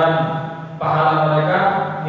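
A man's voice reciting in a steady, chant-like tone that keeps close to one pitch, with a short pause about three-quarters of a second in.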